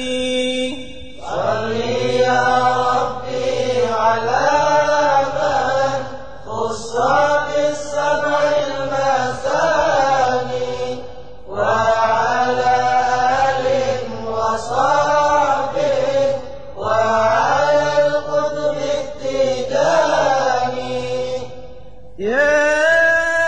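Arabic devotional chanting of a Sufi qasidah: a voice sings long, drawn-out phrases whose pitch rises and falls, with short breaths between phrases roughly every five seconds.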